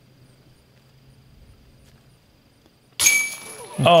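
Faint outdoor background for about three seconds, then a sudden loud burst of voices exclaiming, running straight into commentary and laughter.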